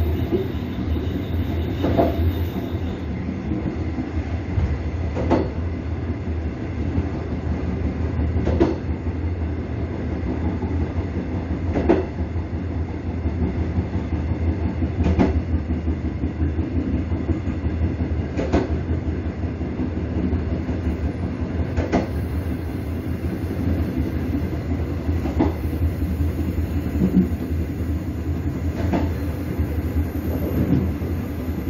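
Train running along the track, heard from its rear end: a steady low rumble with a clack of the wheels over a rail joint about every three seconds.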